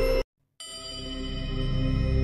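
Om meditation music: sustained, bell-like ringing tones stop abruptly about a quarter second in. After a brief complete silence, a low drone fades in and swells.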